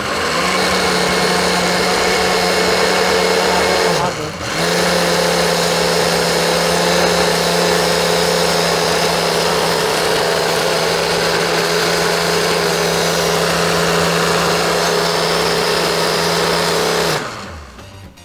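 Countertop blender motor running at a steady speed, puréeing soaked sea moss gel with spiced liquid into a smooth drink. It winds down and picks up again about four seconds in, and cuts off about a second before the end.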